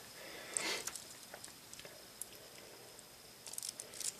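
Faint handling sounds: a few light, isolated clicks and taps, then a quick run of small clicks near the end as hands come in over the table to pick things up.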